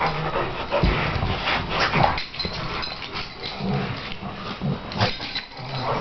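Two dogs play-wrestling, with irregular dog vocal noises and scuffling.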